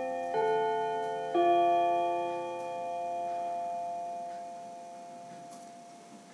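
Electronic building chime: its last two notes are struck about a second apart, and the chord rings on and slowly fades away.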